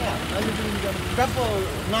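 People talking, in words the recogniser did not catch, over the low steady rumble of a vehicle engine idling nearby.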